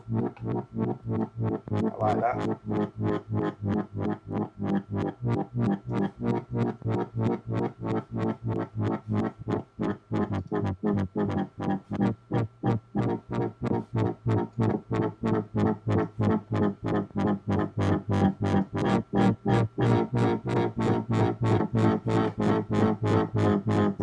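Dubstep wobble bass played on Logic Pro's ES2 software synthesizer: a low held note pulsing in a fast, even rhythm as an LFO sweeps the filter cutoff open and shut.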